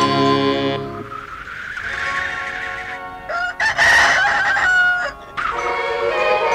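Music breaks off and a faint rising wail follows. About three and a half seconds in comes a loud, short crowing call with a wavering pitch, and music comes back near the end.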